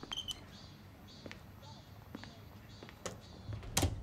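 A door handle and latch clicking as a door is opened, followed by a few soft taps and a louder knock near the end.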